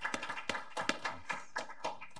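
Applause from a small group: individual hand claps coming quickly and irregularly.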